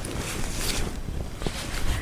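Mercerized cotton saree cloth rustling softly as it is smoothed and gathered by hand, over a low steady background rumble.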